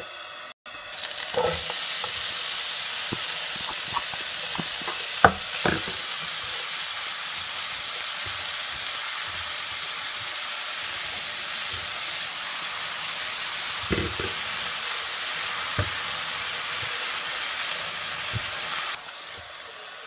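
Diced apple frying in butter in a nonstick wok: a steady sizzle, stirred with a silicone spatula that knocks against the pan a few times. The sizzle starts about a second in and stops shortly before the end.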